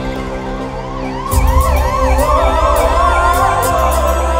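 Ambulance siren yelping, its pitch sweeping rapidly up and down about three to four times a second, over music. It comes in faintly and grows loud about a second in, where a heavier bass and beat also enter.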